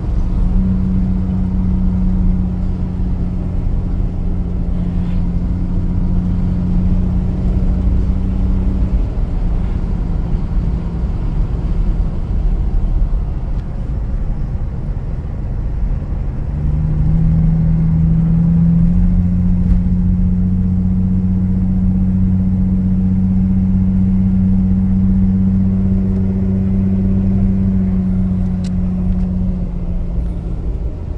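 Chrysler Valiant CM's 265 Hemi straight-six heard from inside the cabin while driving, a steady engine drone over road rumble. The engine note fades about nine seconds in, comes back lower around sixteen seconds, then steps up in pitch a few seconds later and holds.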